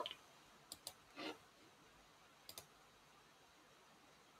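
Faint computer mouse clicks over near silence: two quick pairs of clicks, one just under a second in and one about two and a half seconds in, with a short soft noise between them.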